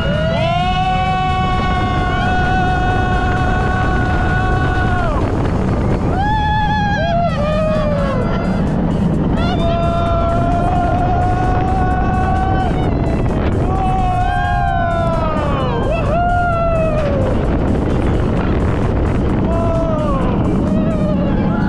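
Roller coaster riders on Mako, a hyper coaster, screaming and whooping in long held cries, some falling in pitch. Under them runs a steady rush of wind and the rumble of the train on the track.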